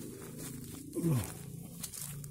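Footsteps crunching through dry leaf litter, over a steady low hum. About a second in, a man's voice gives one drawn-out, falling "nah".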